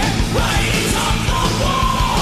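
1980s heavy metal band playing at full volume: distorted electric guitars, bass and fast drums, with a high male lead voice singing.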